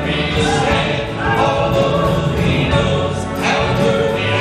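Adult church choir singing a gospel song, led by men singing into handheld microphones, with long held notes.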